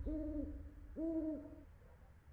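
An owl hooting twice, about a second apart, each a steady low hoot lasting around half a second.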